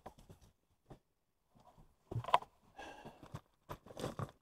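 Faint handling noises: scattered clicks and rustles, with a louder short knock about two seconds in and a spell of rustling after it.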